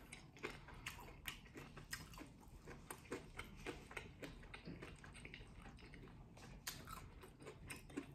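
A person chewing a sauced boneless chicken wing: faint, irregular small wet clicks and smacks of the mouth.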